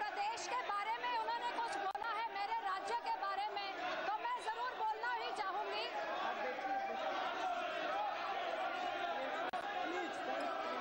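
Many voices talking over one another at once, a continuous babble of overlapping speech in a large chamber.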